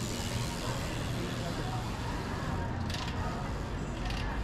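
Outdoor street ambience on a pedestrian shopping street: a steady low rumble with the murmur of passers-by talking, and a brief clatter about three seconds in.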